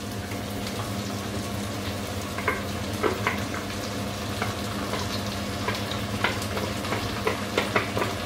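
Sliced onions frying in oil in a pan, sizzling with scattered crackles that come more often toward the end as a wet blended purée is poured in from a blender jug. A steady low hum runs underneath.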